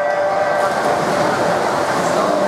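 A held electronic start tone fades out in the first half second as the swimmers dive, giving way to a steady wash of splashing water and voices echoing in the indoor pool hall.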